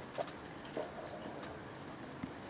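Quiet hall room tone with a few faint, short ticks scattered through it.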